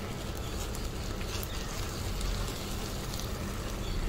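Thick white sauce with Maggi noodles sizzling in a pan on the stove: a steady hiss with small scattered crackles.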